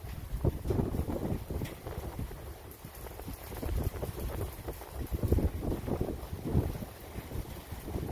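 Wind buffeting the microphone in uneven, low rumbling gusts.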